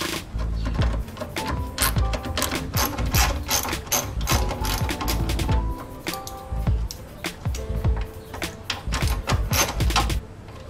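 Hand ratchet with a 10 mm socket clicking as the radiator mount bolts are loosened, over background music with steady notes and bass.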